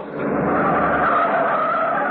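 Sound effect of a car's tyres squealing as it swerves hard, a wavering screech over a steady engine hum, heard through a narrow-band old broadcast recording.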